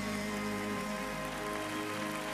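Live orchestra with strings holding the closing chord of the song, over steady audience applause.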